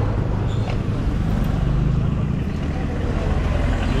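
Steady low rumble of outdoor street noise, with voices in the background.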